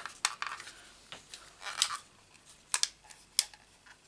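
Stampin' Up Tailored Tag hand punch working through white cardstock: several short, sharp clicks spread over a few seconds, with quiet handling between them.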